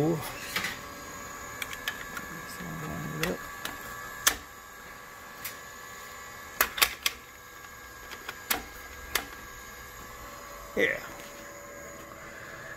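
Steady electrical whine and hum, with several pitches held level, from a running heat-pump setup and its variable-frequency drive. Several sharp irregular clicks sound through it.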